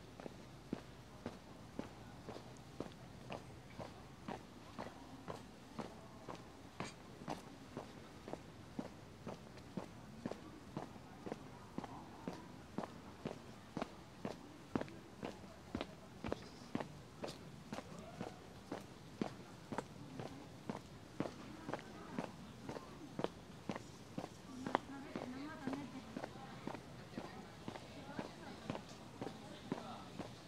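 Footsteps of a person walking at a steady pace on paving, about two steps a second.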